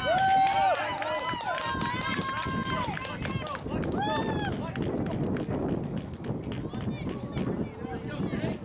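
Crowd of spectators shouting and cheering, with long drawn-out yells from several voices over one another and scattered clapping, loudest in the first few seconds.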